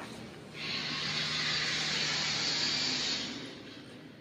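A steady hiss from the sound track of a projection show played over loudspeakers. It swells in about half a second in and fades away near the end, over a faint low hum.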